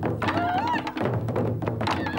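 Taiko drum ensemble playing: many wooden sticks striking large Japanese festival drums in a fast, dense rhythm, with high sliding tones over the drumming.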